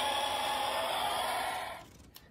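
Hot Wheels electronic finish gate playing its recorded winner's sound effect through its small speaker: a steady rushing noise with a faint held tone in it, fading out just before the end.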